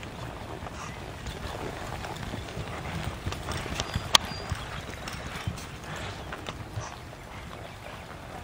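Cutting horse's hoofbeats, irregular thuds and scuffs in the soft arena dirt as it moves with a cow, with one sharp click about four seconds in.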